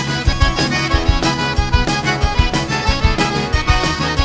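Cajun band playing live with no vocals: a button accordion carries the lead over electric guitar, bass guitar and a drum kit keeping a steady dance beat.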